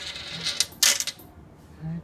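A penny rolling its last fast turns in a spiral wishing-well coin funnel, then dropping through the centre hole with a loud clatter a little under a second in, after which it dies away.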